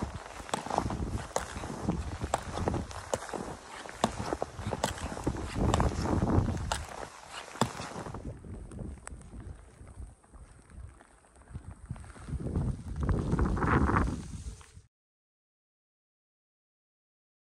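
Splitboard being skinned uphill in deep powder: the climbing skins swish over the snow in a steady stride rhythm, with sharp clicks of pole plants and the bindings. It cuts off abruptly near the end.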